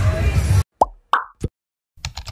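Street crowd talking over music, cut off suddenly, followed by three short cartoon-style pop sound effects in quick succession about a second in.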